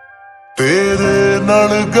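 Slowed-and-reverb lo-fi edit of a Punjabi pop song: a faint, fading tail of held notes, then about half a second in the full arrangement comes back in suddenly and loudly with sustained, held notes.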